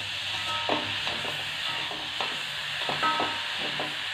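Metal spatula stirring and scraping grated coconut and sugar around a metal pan on the heat, a run of light scrapes and taps with faint ringing from the pan, over a steady sizzling hiss.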